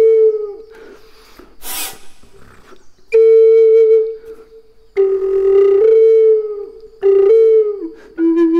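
Low-A contrabass pimak (Native American–style wooden flute) played in short breathy phrases. A held note fades out, then after a pause with a short breathy hiss come three phrases that slide up between two notes, the last bending down as it ends.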